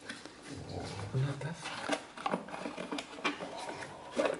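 Paper rustling and crinkling in irregular small crackles as a folded paper gift wrapping and card are unwrapped by hand, with a short low hum a little over a second in.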